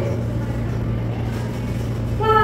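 A steady low hum, with a faint even background hiss.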